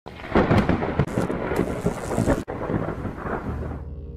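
Thunder: loud crackling and rumbling, strongest in the first second, that breaks off suddenly about two and a half seconds in, then carries on more weakly and fades near the end, with a low steady hum underneath.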